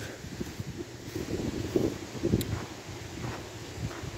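Wind buffeting a phone microphone in a low rumble, with faint scattered taps of footsteps on gravel and a single sharp click about two and a half seconds in.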